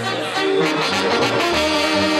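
Brass band music playing steadily, with trombone and trumpet-like tones.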